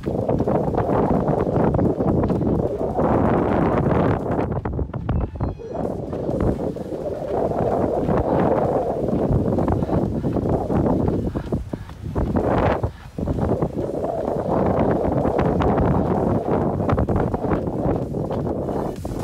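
Wind buffeting the microphone, loud and coming in gusty surges, with a short lull about two-thirds of the way through.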